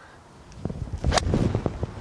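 A 7-iron striking a golf ball: one sharp crack a little over a second in. Low rumbling wind noise on the microphone runs alongside it.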